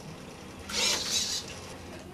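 A homebuilt robot's arm motors running as the arm swings down in a karate move, with a short hissing whoosh, in two pulses, a little under a second in.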